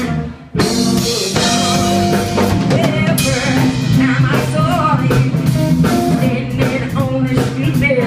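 Live band of electric guitars, bass and drum kit playing a blues-rock number. The band stops sharply just after the start, then comes back in together and plays on.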